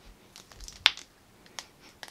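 A few light clicks and taps from a sealed plastic cosmetics container being handled close to the face, the sharpest a little under a second in.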